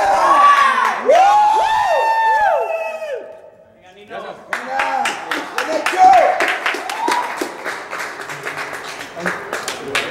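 Loud shouting for about three seconds, then, after a brief lull, a small group of people clapping with voices mixed in.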